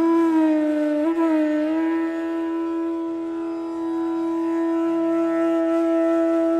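Bansuri (bamboo flute) entering with a slide up into a long held note, with small bends about a second in before the note settles and holds steady.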